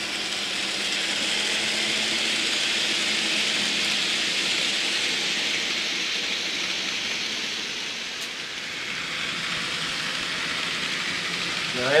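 N scale model trains running on the layout's track, a steady rolling hiss. It swells over the first few seconds, dips about eight seconds in, then builds again.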